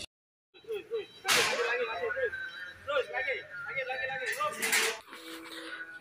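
Half a second of silence, then men's voices talking in the background, not close to the microphone, with two short noisy bursts, one about a second in and one near the end.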